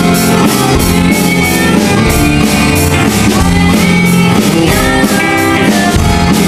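Live band music: an acoustic-electric guitar strummed over keyboard and a drum kit keeping a steady beat, with a girl singing.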